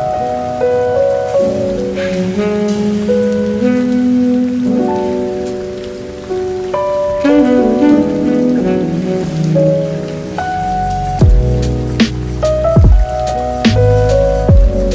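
Steady rain sound under mellow, chill lo-fi music with soft sustained keyboard chords. A drum beat with low kick hits comes in about ten seconds in.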